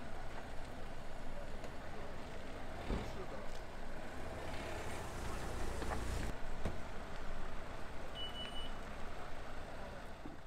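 Motor vehicles running on a street, a steady engine rumble with a couple of knocks and a short high beep near the end.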